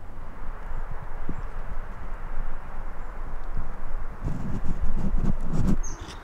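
Scraping and rustling on a forest floor of dry pine needles, with a low rumble throughout and a run of knocks and scratches in the last two seconds as a wooden stick works the ground.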